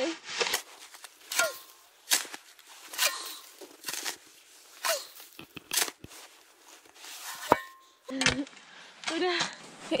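Metal-bladed shovel cutting and scooping into deep snow, a short crunching stroke about once a second.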